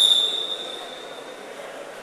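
Referee's whistle: one long, steady, high-pitched blast that fades out about a second and a half in, signalling the start of a wrestling bout.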